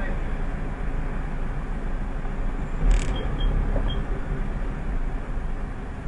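Car running and driving slowly, heard from inside the cabin as a steady low rumble. About three seconds in there is a single sharp knock, and a few short high beeps follow it.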